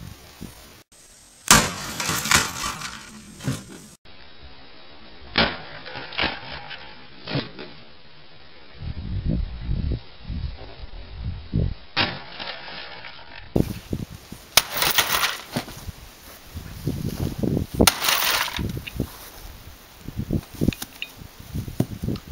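A sledgehammer striking a VCR resting on a metal appliance cabinet: a string of sharp cracking blows at uneven intervals, some with a brief rattle of plastic parts after the hit.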